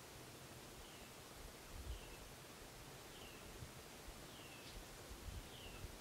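Near silence, broken only by one bird calling faintly: a short falling note repeated about five times, roughly once a second.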